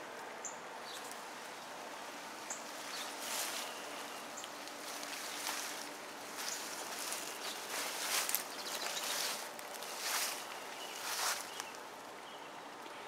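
Leaves and stems of tall garden plants rustling in a series of short swishes as they are brushed past, coming more often in the second half. A few brief, high bird chirps sound in the first few seconds.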